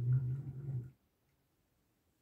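The many wheels of a 1/50 scale diecast truck and low-loader trailer rolling across a wooden tabletop as a hand pushes the model: a steady low rumble that stops about a second in.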